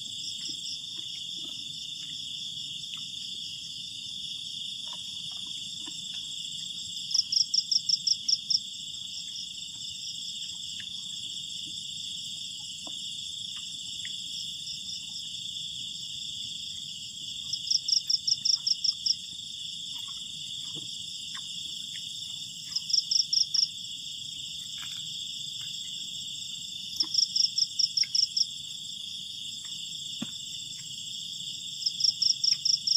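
Night-time insect chorus: a steady high-pitched trill, with a louder chirping call of rapid pulses, about six a second, breaking in four times for about a second and a half each.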